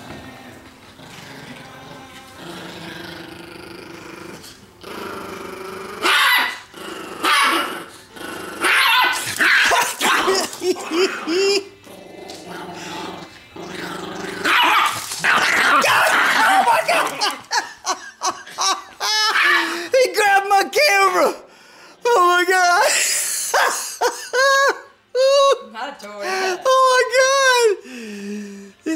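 Chihuahua growling protectively over a T-bone steak bone he is chewing. The growl is low and steady at first, turns loud and rough from about six seconds in, and breaks into short, higher-pitched growl-barks through the second half.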